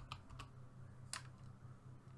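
Faint clicks of computer keyboard keys being pressed, a few in all, the loudest about a second in, over a steady low hum.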